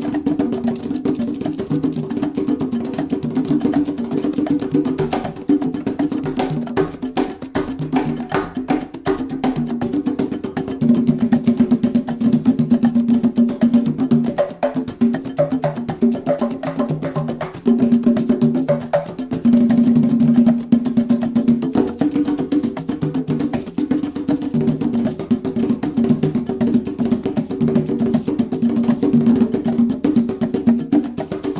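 A pair of congas played with bare hands in a fast Afro-Cuban solo: rapid strokes moving between both drums, with two louder, denser passages in the middle.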